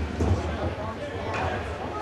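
Ice rink ambience during a stoppage in play: distant, indistinct voices and crowd murmur over a steady low hum, with a few faint knocks.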